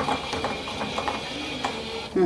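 An autorefractor's motorised mechanism making a run of small irregular clicks over a faint steady whine as the instrument is adjusted to the patient's eye.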